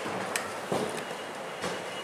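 Steady room noise with three short soft knocks as a whiteboard marker is handled and brought up to the board.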